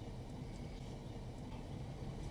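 Faint, steady low rumble of a car moving slowly, heard from inside the cabin.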